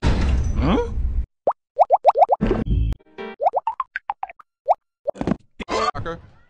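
Spliced fragments of cartoon soundtrack audio: about a second of dense music with a rising slide in pitch, then abrupt cuts to dead silence broken by short choppy pieces, including a quick run of brief rising squeaks and a few noisy bursts.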